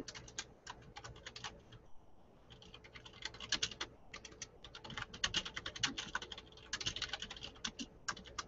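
Typing on a computer keyboard: quick, irregular runs of key clicks with short pauses between them.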